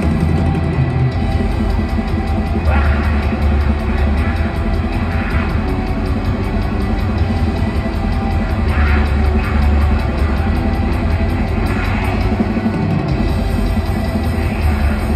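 Rock band playing live at full volume, with fast drumming and electric guitar, heard from far back in a large theatre hall.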